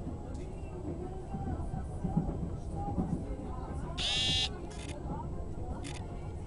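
Passenger train running, a steady low rumble heard from inside the carriage, with faint voices. About four seconds in, a loud shrill buzzing tone sounds for about half a second, followed by two shorter bursts near the end.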